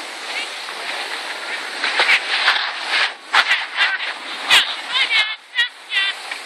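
Skis hissing steadily over packed, groomed snow while skiing downhill, with distant high-pitched voices calling from about two seconds in.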